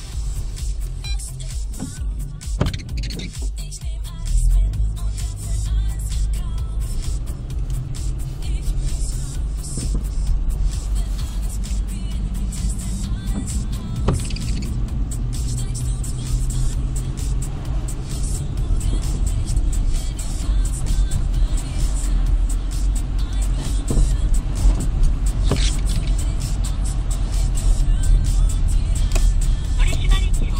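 Low rumble of a car's engine and tyres heard from inside the cabin, growing louder about four seconds in as the car pulls away from the ETC gate and drives on, with music playing along.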